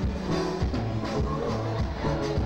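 Live band music with a steady drum beat and sustained bass notes.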